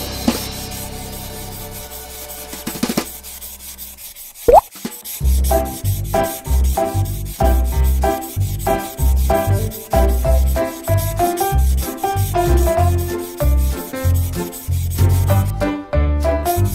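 Felt-tip marker rubbing on paper in quick back-and-forth coloring strokes, over background music. The music has a short rising glide about four and a half seconds in, then a bouncy bass beat and melody.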